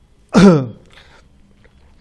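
A man clearing his throat once: a short, loud burst that falls in pitch, about a third of a second in.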